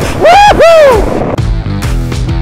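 A man whooping twice in excitement, two quick rising-and-falling cries, then heavy rock music starts about two-thirds of the way through.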